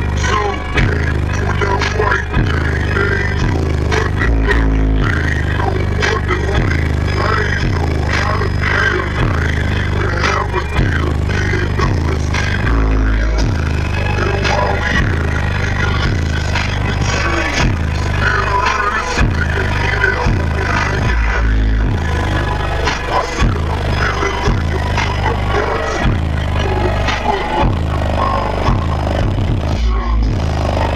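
Bass-heavy music played very loud through a car audio system's two 18-inch SMD subwoofers, heard inside the truck cab, with a pulsing beat of deep bass notes and a few long held low notes. Rattling and buzzing from the cab runs along with the bass.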